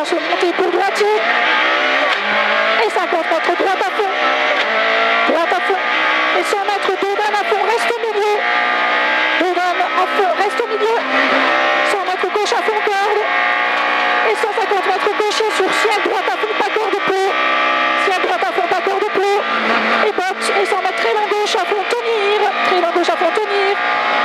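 Peugeot 106 F2000 rally car engine at full effort, heard from inside the cabin: the revs climb again and again and drop back at each gear change as the car accelerates hard along the stage. Many sharp clicks and knocks run through it.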